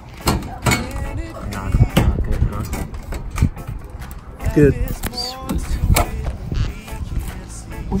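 Wind gusting on the microphone, with scattered knocks and rattles of sheet-metal flashing being handled and pressed into place.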